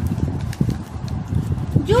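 Irregular low thuds, knocks and rubbing: handling noise as the recording phone and the textbook are shifted and a hand comes onto the page. A woman starts speaking near the end.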